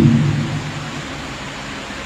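A pause in a man's speech: his last word trails off in the first half-second, then only a steady background hiss.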